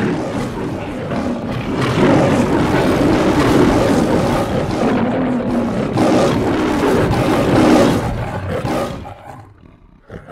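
Lions roaring, loud overlapping roars one after another for about eight seconds, then dying away just before the end.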